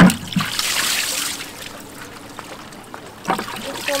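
Seawater pouring out of a tipped plastic bucket and splashing onto rocks. A thump at the very start is the loudest sound. The heavy splash lasts about a second, then thins to a trickle.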